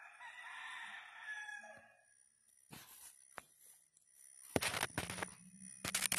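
A rooster crowing once, one drawn-out call of about two seconds that trails off at the end. A few short bursts of rustling follow in the second half.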